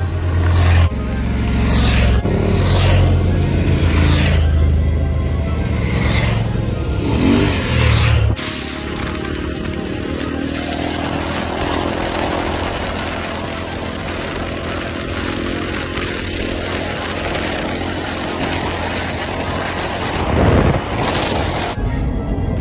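Background music with a heavy bass beat, then from about eight seconds in a dirt bike's engine running at speed under loud wind noise on the microphone, with a brief louder surge near the end.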